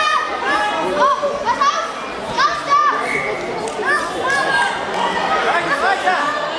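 Many high-pitched voices, children's among them, shouting and calling out over one another in a large sports hall.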